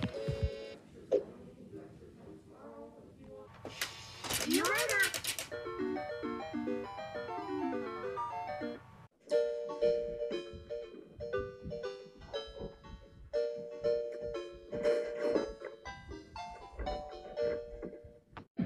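Electronic toy-laptop shutdown jingles and voice clips run through a G-Major effect of layered, pitch-shifted copies. First come beeps, a tone that sweeps up and down, and a descending run of notes. After a short break about nine seconds in, a second jingle with a steady beat follows.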